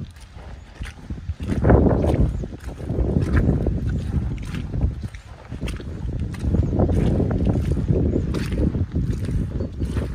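Snow boots tramping through wet, sloppy mud: squelching, sloshing footsteps with sharper clicks of single steps. The sound swells for a few seconds from about a second and a half in, and again through the second half.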